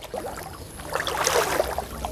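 Pond water sloshing and splashing as two people wade through it, sweeping a fine-mesh net. It grows a little louder after about a second.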